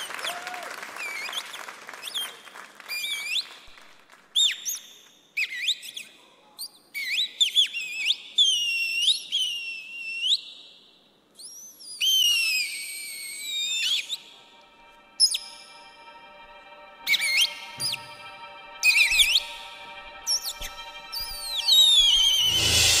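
Recorded birdsong opening the dance track: a string of high chirps and whistled bird calls that glide up and down in pitch. A soft, held musical drone comes in underneath about two-thirds of the way through.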